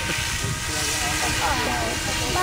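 Goblin 700 radio-controlled helicopter in flight, a steady whoosh of its main rotor, with faint voices of people talking about a second and a half in.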